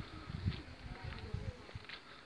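A flying insect buzzing, its thin drone wavering up and down in pitch, over soft low thuds of footsteps.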